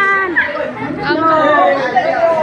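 Several voices talking and calling out over one another in loud chatter, with a drawn-out call ending just after the start.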